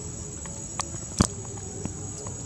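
Steady high-pitched drone of insects, such as crickets, in the surrounding forest, broken by a few sharp clicks, the loudest about a second in.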